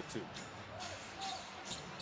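A basketball being dribbled on a hardwood court, with the steady noise of an arena crowd behind it.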